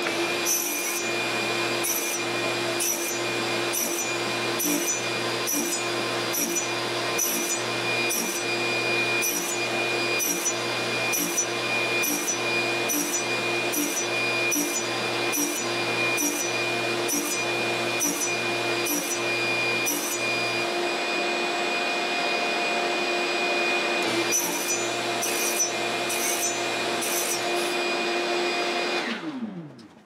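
Radial arm saw with a thin fret-slotting blade running with a steady high whine while it cuts fret slots into a glued-on fretboard. The cuts come as a quick, even series of repeated strokes, pause briefly, then resume, and the sound drops away just before the end.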